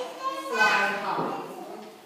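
A woman's voice speaking in a large hall, sounding out phonics sounds from cards.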